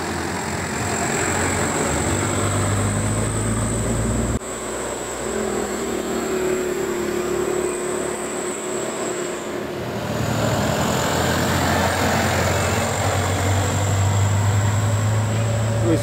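A medium bus's diesel engine passes close by, and the sound changes abruptly about four seconds in. From about ten seconds on, a loaded truck's diesel engine works hard up a bend, running loud and steady and blowing thick exhaust smoke.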